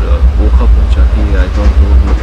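Steady low rumble of a moving passenger train heard from inside a sleeper coach, under a man talking close to the microphone.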